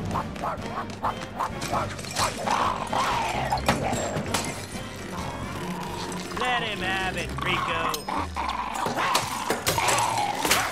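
Cartoon action soundtrack: fast music under a string of crashes and knocks, with a small dog snarling and a wavering high cry about six and a half seconds in.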